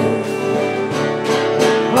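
Live country gospel band playing an instrumental passage between sung lines: a fiddle holding notes over strummed acoustic guitar, electric guitar and drums, with a steady beat.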